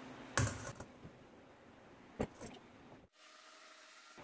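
Light clicks and taps of a metal spoon against a small wire-mesh sieve while sifting the flour mix, two sharper taps about two seconds apart and a few faint ticks between them.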